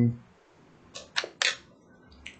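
Three short, sharp clicks in quick succession about a second in, against a quiet background.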